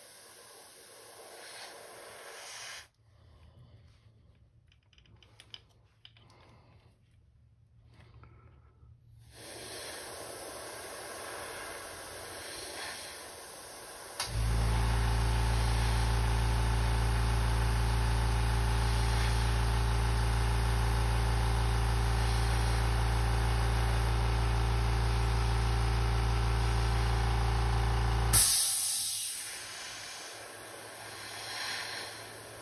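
Airbrush air hissing softly in short spells. About halfway in, an airbrush air compressor's motor starts and runs with a steady hum, the loudest sound here, then cuts out near the end with a short, sharp hiss of released air.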